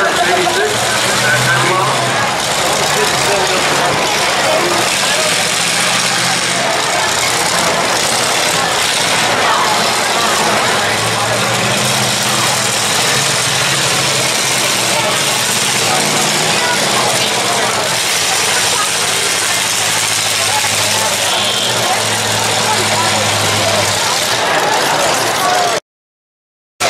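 Engines of several demolition derby cars running around the arena, their low note rising and falling, over a steady noise of crowd chatter.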